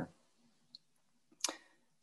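Near silence broken by a faint tick and then a single sharp click about one and a half seconds in.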